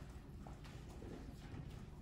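Quiet lecture-hall room tone: a steady low hum with faint, irregular clicks and taps scattered through it.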